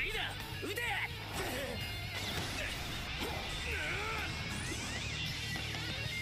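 The soundtrack of a basketball anime plays at low volume: background music with character voices shouting dialogue.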